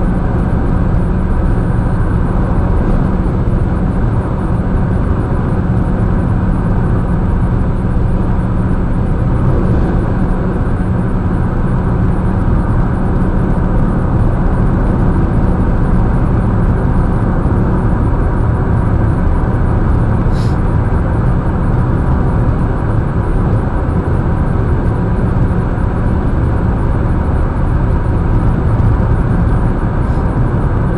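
Steady road and tyre noise with a low engine hum, heard inside the cabin of a car cruising on a highway.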